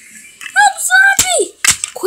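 A child's high-pitched wordless vocalising, a play sound effect, from about half a second in, with a few sharp clicks near the end.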